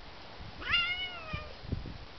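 A cat meows once during rough play-fighting with another cat: a short call that rises quickly and then slides down. A few soft low thumps sound around it.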